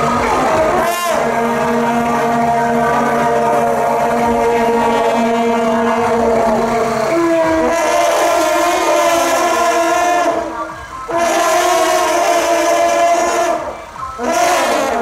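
Several long straight procession horns (sāu-kak, 哨角) with wide flared bells, blown together in long sustained blasts that sound as a chord of steady pitches. The pitch steps up about seven seconds in. The blast breaks off about ten and a half seconds in, resumes a second later, and breaks briefly again near the end.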